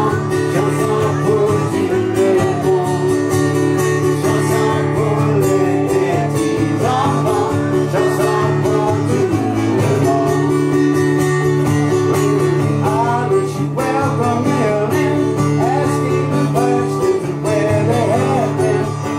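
Live acoustic-guitar music: a strummed acoustic guitar leading a small band, playing continuously.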